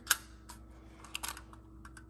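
Light clicks and taps from a tin-plate toy robot being handled and turned over in the hands: about five small sharp clicks, the first the loudest.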